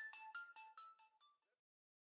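Outro of a hip-hop beat: a quick melody of short, bell-like synth notes, about five a second, fading away about a second and a half in.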